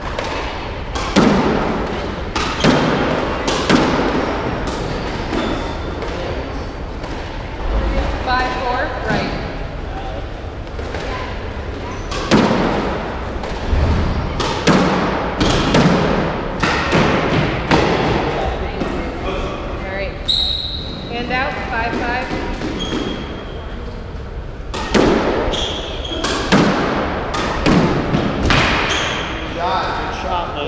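Squash rallies: the ball cracked off racquets and smacking the walls, sharp hits about a second apart that ring in the enclosed court, coming in runs with short pauses between points.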